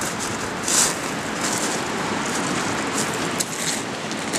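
Steady rushing outdoor noise, with a brief louder rustle a little under a second in.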